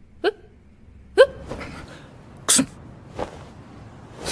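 A person's short, surprised exclamations, "huh? huh?!", as two brief yelps that bend in pitch, about a second apart, followed by a short, sharp breathy burst about halfway through.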